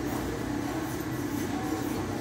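Steady low rumble of running machinery, even in level throughout.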